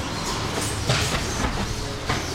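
Uke taking breakfalls on the dojo mats during aikido throws: a run of dull thumps of bodies and feet hitting the mat, over the rustle of gi and hakama. The loudest thump comes about a second in.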